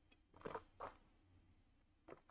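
Near silence, with two faint, short drinking sounds from a mug about half a second and just under a second in.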